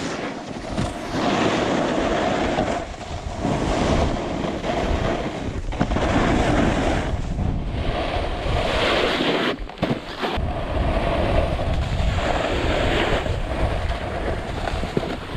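Snowboard sliding and carving over groomed spring snow, a rushing scrape that swells and eases with each turn and cuts out briefly about ten seconds in, mixed with wind buffeting the microphone.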